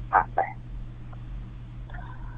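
A man's voice speaks two short words, then pauses, leaving only a steady low electrical hum.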